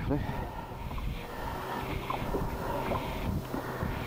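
Wind rumbling on the microphone over open water around a drifting boat, with a faint steady hum beneath and a few small ticks.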